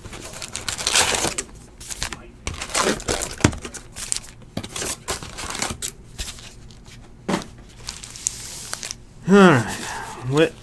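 Crimped wrappers of 2018 Topps Heritage baseball card packs crinkling and tearing as packs are opened and handled, with scattered rustles and sharp clicks. A short burst of voice comes near the end.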